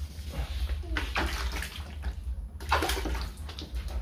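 Wet 2000-grit sandpaper scrubbing by hand over a plastic car headlight lens in uneven strokes that stop near the end. This is the final fine-sanding stage for taking the yellowing off the lens.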